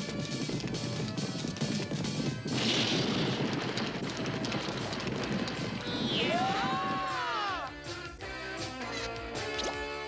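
Cartoon sound effects of a heap of junk crashing and clattering down in a long run of impacts. A whistling glide rises and falls about six seconds in. Background music continues under it and carries on alone near the end.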